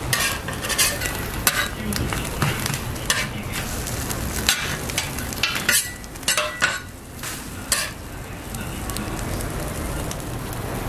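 Meat patty and egg omelette frying on a flat-top griddle, sizzling steadily, with a dozen or so irregular sharp clicks and scrapes of a metal spatula on the griddle plate.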